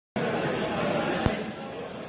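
Indistinct chatter of several people, with one sharp thump about a second in.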